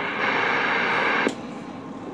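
Galaxy CB radio receiver putting out a steady static hiss from an open carrier, cut off by a sharp click about 1.3 s in as the transmission drops, leaving a quieter hiss.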